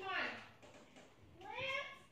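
A teenage boy's high, whining voice: a drawn-out cry trailing off, then after a short pause another brief whine that rises and falls.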